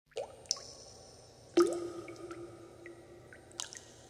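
Water-drop sound effects: a few sharp plinks with a short rising pitch, the loudest about one and a half seconds in, each leaving a lingering ringing tone, followed by fainter scattered drips.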